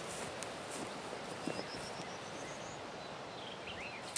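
Open-field ambience: a steady outdoor hiss, with a bird singing a quick run of high notes rising in pitch around the middle and a few short chirps near the end. Brief rustles in the first second come from boots in long grass as a person walks up and crouches.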